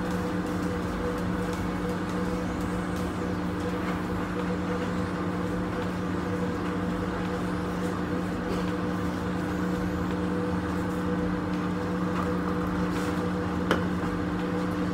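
Steady electrical hum of a room appliance, holding a few constant tones without change, with a short knock near the end.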